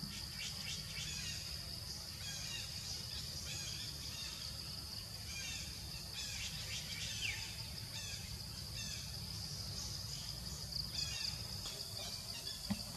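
Tropical forest ambience: a steady high-pitched insect drone, with birds chirping in short, repeated bursts over it and a low rumble underneath.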